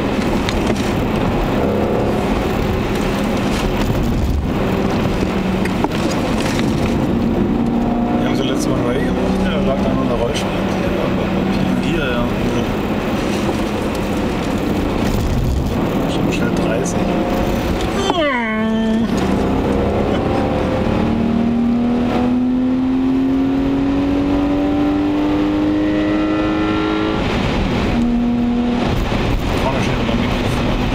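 BMW 525i E34's M50B25TU 2.5-litre straight-six heard from inside the cabin under acceleration, its pitch climbing steadily through each gear. The revs drop sharply at upshifts, most clearly a little past halfway, then climb again.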